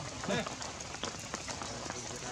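A steady outdoor hiss of forest ambience with scattered small ticks, broken about a third of a second in by one brief pitched vocal call.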